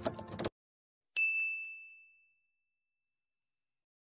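A short intro music sting cuts off abruptly about half a second in; then, about a second in, a single bright electronic ding rings out and fades away over about a second, the sound effect of an animated logo intro.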